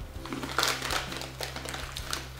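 A person biting and chewing small crunchy chocolate graham cracker snacks: a few short, crisp crunches scattered through the moment, over a faint steady low hum.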